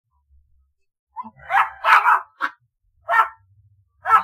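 A dog barking: several short barks in a quick run starting about a second in, then one more about three seconds in.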